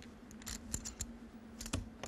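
Clay poker chips clicking together as players handle and shuffle their stacks: short, sharp clicks at irregular intervals over a faint steady hum.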